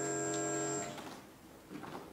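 A man's voice holding one long, steady chanted note in a Pali recitation, which stops a little under a second in; after that, quiet room tone.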